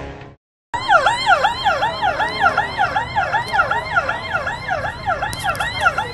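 An emergency vehicle's siren on a fast yelp, its pitch swooping down and back up about three times a second. It starts just under a second in, after the tail of a loud dramatic music hit fades out.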